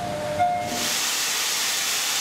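Two short electronic beeps, one at the start and one about half a second in, then a loud steady hiss that comes in and holds level.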